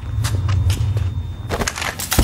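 Crunching, crashing debris with sharp cracks: a low rumble under the first second fades, then a cluster of impacts comes near the end.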